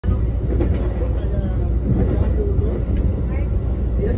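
Steady low rumble of a moving VIA Rail passenger train, heard from inside the coach.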